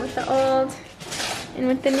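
A woman speaking in short bits, with a brief rustle of fabric between her words as a chair slipcover is handled.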